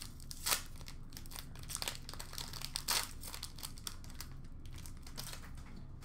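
Foil wrapper of an Upper Deck SP Authentic hockey card pack being torn open and crinkled by hand: scattered crackles, with louder ones about half a second and three seconds in.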